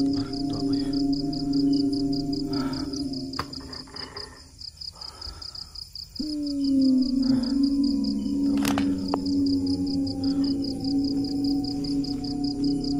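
Eerie ambient drone music of sustained low tones. It thins out for a couple of seconds near the middle, then comes back abruptly with a falling swell. Above it, night insects keep up a fast, steady pulsing chirp.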